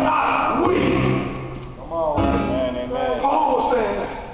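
Church keyboard music with held low bass notes under a man's raised, pitch-swooping voice, with some shouts from the congregation.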